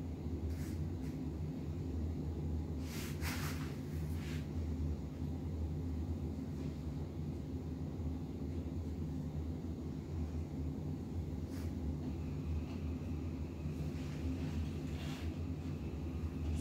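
A steady low hum from a machine or appliance in the room, with a few faint brief clicks.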